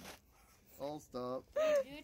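A person's voice laughing: a short pause, then three brief voiced bursts about a second in.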